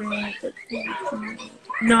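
Voices talking, with a steady low hum underneath; near the end a woman's louder voice says "No."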